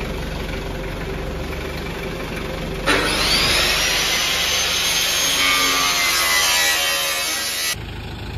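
An engine idles steadily for about three seconds, then an angle grinder starts suddenly, its whine rising as the disc spins up, and cuts into the front wheel arch of an off-road SUV to trim it so the tyre no longer rubs on steering lock. The grinding stops abruptly near the end.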